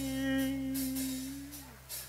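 A man's sung note, held at the end of a line over a sustained backing-track chord, fading out and dipping in pitch as it ends about 1.7 s in.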